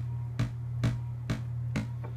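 Eurorack modular synth playing short, plucky enveloped oscillator notes, four evenly spaced hits at a little over two a second. A gate pattern from a Zorlon Cannon MKII sequencer triggers an envelope that opens a VCA. A steady low hum runs underneath.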